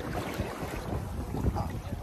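Wind buffeting a phone microphone at the sea's edge: a steady low rumble.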